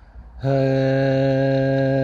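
A man's voice chanting a mantra, holding one long steady note that begins about half a second in after a brief quieter moment.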